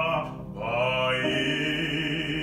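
A baritone sings a classical art song in Portuguese, with grand piano accompaniment. About half a second in he stops briefly for breath, then holds a new note with vibrato while the piano's low notes move on beneath him.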